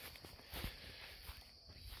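Quiet outdoor background with a faint steady high hiss and a few soft footsteps on the ground.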